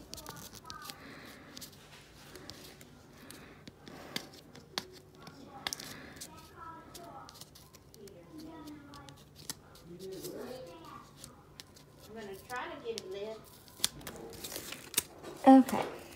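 Fingernails picking and peeling packing tape off a cardboard mailer: scattered scratches, small tearing sounds and clicks of the card being handled, over a faint voice. The sharpest, loudest handling sounds come near the end.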